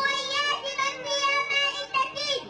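A young girl's voice performing a poem in a melodic, sung delivery into a microphone, with long held notes.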